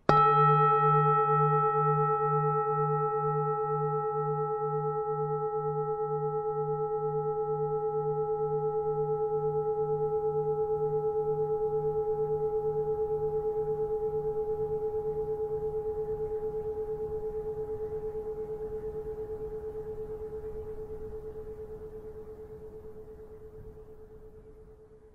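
A Buddhist bowl bell (singing bowl) struck once, ringing out in a long tone of several pitches. The low hum wavers in a slow pulse, and the ring fades gradually but is still sounding at the end.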